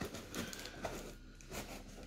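Cardboard shipping box being handled: faint rustling and scraping with a few light taps.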